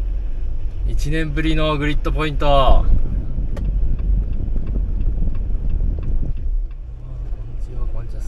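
Jeep Wrangler driving slowly, a steady low engine and road rumble. A voice speaks briefly, about a second in.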